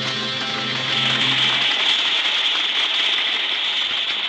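Orchestra holding the final chord of an opera, breaking off about a second and a half in, as loud applause rises over it and carries on.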